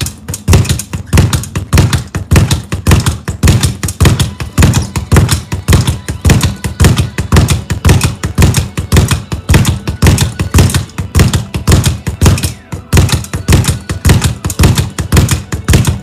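Speed bag being punched in a fast, unbroken rhythm: the leather bag knocking against the wall-mounted rebound board, about three loud beats a second with quicker rattling knocks between.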